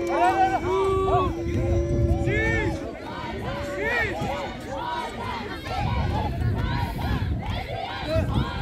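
Crowd of spectators shouting and calling out together, many overlapping voices, with long drawn-out shouts in the first few seconds.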